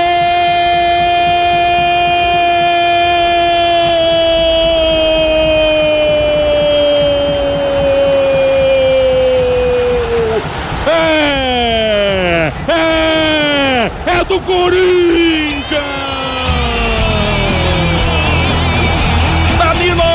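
Radio football commentator's goal cry for a Corinthians goal: one long held "gooool" note, drifting slowly lower for about ten seconds. It is followed by shorter shouts that fall sharply in pitch, then a music jingle with a beat comes in near the end.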